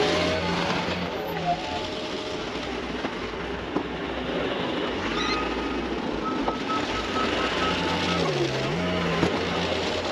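A loader's diesel engine running under load while it pushes snow with its snow wing. A short run of high beeps comes about six seconds in.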